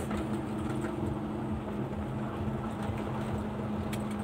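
Semi truck's diesel engine droning steadily at highway speed, heard from inside the cab over road rumble. A single sharp click comes near the end.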